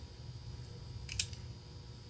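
Quiet room tone with a low steady hum and one small sharp click a little over a second in.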